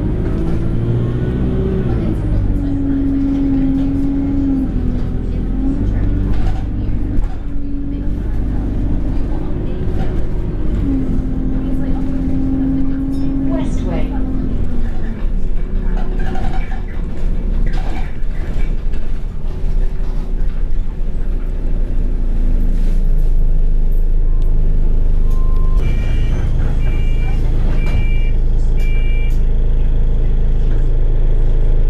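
Alexander Dennis Enviro 200 bus heard from inside the passenger saloon: the diesel engine and gearbox drone with a whine that rises, holds and steps in pitch as the bus pulls along, then settles lower after about fifteen seconds. About four seconds before the end, a run of high electronic beeps sounds, repeating roughly once a second.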